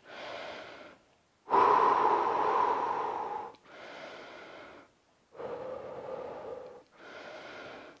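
A man taking slow, deep breaths in and out, heard close on a clip-on microphone: about five breath sounds, the loudest a long breath of about two seconds starting about a second and a half in.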